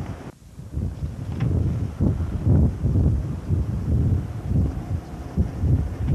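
Wind buffeting the microphone in uneven gusts: a low rumble that rises and falls, dipping briefly about half a second in.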